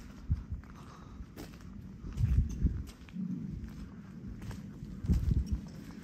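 Footsteps of a person walking across rough yard ground and grass while carrying the camera: irregular low thumps and scuffs, uneven in spacing.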